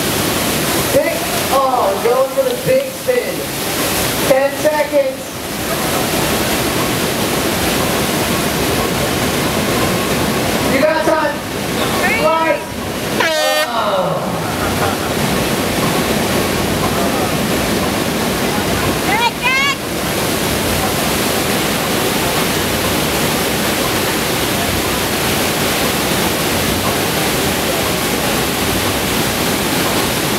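Steady rush of pumped water jetting up a FlowRider barrel-wave machine's ride surface. People's voices call out over it several times, near the start, around the middle and once more a few seconds later.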